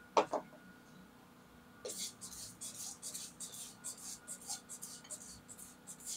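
Water squirted from a plastic wash bottle onto a piece of steel conduit to rinse it. It comes as repeated short hissing bursts, starting about two seconds in.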